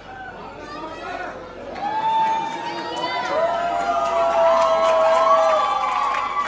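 A concert audience cheering, with many high-pitched, drawn-out screams building up about two seconds in.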